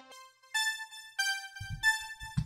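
KiloHearts The One software synthesizer playing three held, electric-piano-like notes, the middle one lower in pitch, starting about half a second in. Two low thumps come in near the end.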